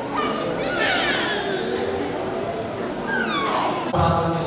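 Children's high-pitched voices shouting and squealing in a hall, the squeals falling in pitch, in two bursts, one near the start and one near the end.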